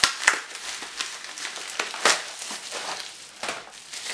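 Plastic padded mailer and bubble wrap crinkling in the hands as a parcel is opened. Irregular crackles, the sharpest about a third of a second in and about two seconds in.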